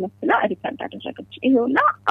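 Speech in Amharic over a steady low hum, with a voice sliding sharply up in pitch near the end.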